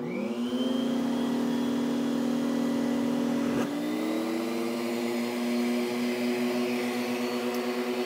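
Vacmaster 5-peak-HP two-stage wet/dry shop vac motor switched on, winding up quickly to a steady whine. About three and a half seconds in, a water-lift gauge seals the suction port, and the pitch dips briefly, then settles a step higher as the airflow is blocked.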